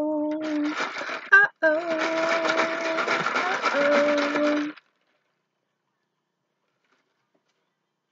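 A woman humming steady held notes while a tarot deck rustles in her hands. Both cut off suddenly about five seconds in.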